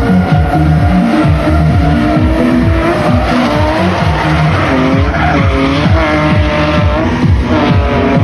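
Electronic music with a steady beat laid over two BMW drift cars sliding in tandem, their engines running hard and tyres squealing.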